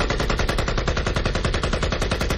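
A sustained burst of automatic rifle fire: rapid, evenly spaced shots, about a dozen a second, at a steady loudness throughout.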